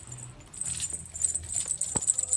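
A two-and-a-half-month-old kitten's low, rattly purr, the sound it makes when happy, under a light jingling. A sharp click near the end.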